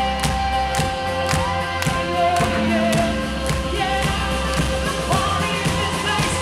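A live band playing with a singer over a steady beat of about two hits a second, and the crowd clapping along.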